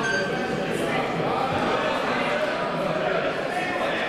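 Many voices talking at once in a large, echoing chamber: the steady chatter of a crowd of parliament members, with no single voice standing out.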